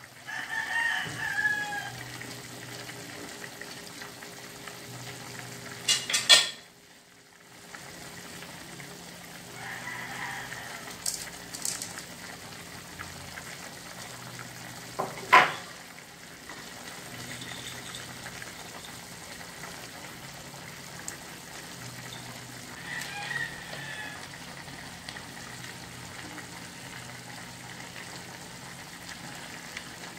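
A rooster crowing three times, about a second in, around ten seconds and around twenty-three seconds, over the steady simmer of pork hocks braising in an aluminium pan. Two sharp knocks, the loudest sounds, come near six and fifteen seconds.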